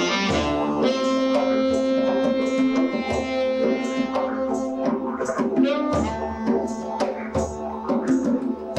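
Saxophone, a tenor by its look, played live, holding long notes with a band's drum strikes beneath.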